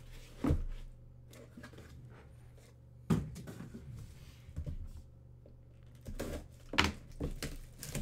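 Shrink-wrapped trading card boxes and their cardboard case being handled and set down on a table: several sharp knocks, with soft rustling and scraping of cardboard and plastic wrap between them.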